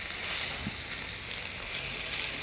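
Beef steak sizzling on a hot, oiled flat-top griddle: a steady, even hiss of searing meat.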